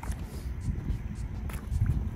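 Wind buffeting an outdoor microphone, a steady low rumble, with a few faint clicks.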